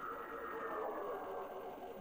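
Faint steady drone with a high tone that slowly falls in pitch: the eerie sound that is then taken for a strange plane overhead.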